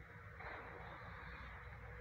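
Faint outdoor background noise: a steady low rumble and hiss, with a few faint bird chirps.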